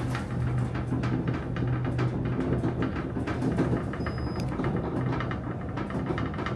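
Elevator car travelling in its shaft: a steady low motor hum with light rattling from the car. A short high beep sounds about four seconds in.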